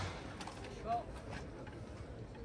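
Open-air ambience with faint voices and a few faint taps. No single sound stands out.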